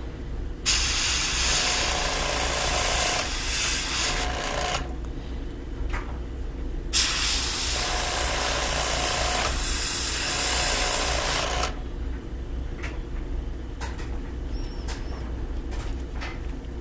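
Gravity-feed airbrush spraying paint through a stencil in two long hissing bursts of about four seconds each, with a pause between, over a steady low hum. Near the end there are a few small clicks.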